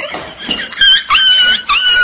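A small dog crying with repeated high-pitched squeals, each about half a second long with short breaks between, starting about a second in.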